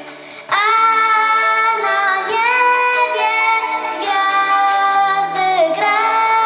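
A group of girls singing a Polish Christmas carol (kolęda) together, coming in after a brief pause about half a second in and holding long notes.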